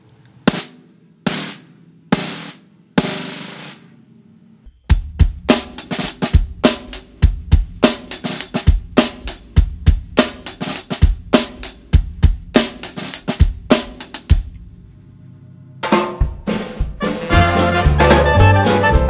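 Snare drum buzz strokes played with a cat's paw: four single buzzed strokes, each longer than the one before, the last a long buzz of nearly a second. Then about ten seconds of a steady groove of buzzed snare strokes over a kick drum. Near the end, music with a bass line comes in.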